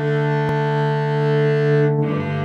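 Cello bowed, holding one long low note with a full ring of overtones, moving to a new note at the very end.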